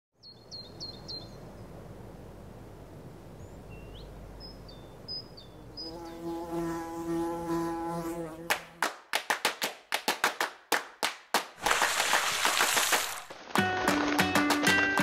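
A layered sound-effects bed: a few short, high chirps over a low steady hum, then a buzzing drone for about two seconds, a fast run of sharp clicks, and a brief hiss. Music starts just before the end.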